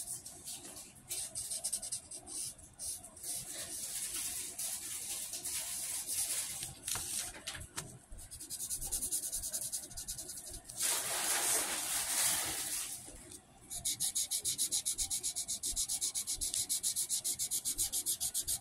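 Scratchy rubbing close to the microphone, uneven at first, with one longer, louder rub about two-thirds of the way in, then turning into fast, regular back-and-forth strokes for the last few seconds.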